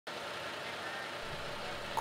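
Steady street noise of a motor vehicle engine running.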